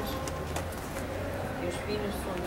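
Faint, indistinct voices over a steady low rumble of outdoor background noise.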